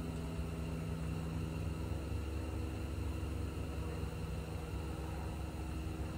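Steady low background hum with a faint hiss, unchanging throughout and with no distinct events.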